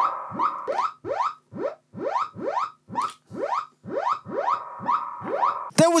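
1970s Practical Electronics (P.E.) DIY magazine synthesizer repeating a quick rising pitch sweep, about two and a half times a second, over a steady held tone. It is playing cleanly on newly replaced potentiometers.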